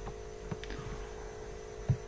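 Steady electrical mains hum from the recording setup, with a few faint short clicks.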